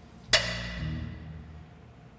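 A microphone stand is knocked while being handled, giving one sharp, loud metallic clank with a ringing decay about a third of a second in. Soft background music plays underneath.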